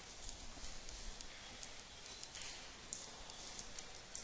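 Faint, irregular clicks and taps of a stylus on a tablet computer's screen as capital letters are handwritten, over a low steady hiss.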